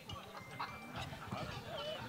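Faint murmur of voices in a hall between questions, with a few short, quiet vocal sounds.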